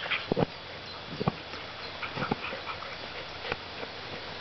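A large shepherd-type dog mouthing and biting at a worn soccer ball that it cannot get a grip on, with several short, sharp sounds about a second apart.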